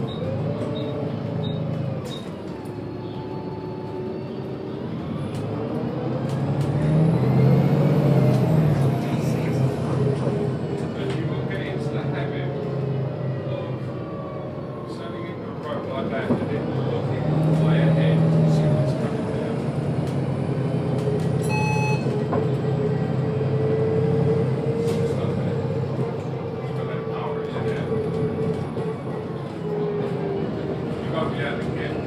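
Volvo B7TL double-decker bus heard from inside the lower deck: its diesel engine and transmission run steadily, swelling twice as the bus accelerates with a rising whine. A short ding sounds about two-thirds of the way through.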